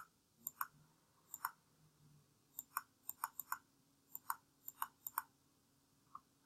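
Faint computer mouse clicks, about a dozen, many in quick press-and-release pairs.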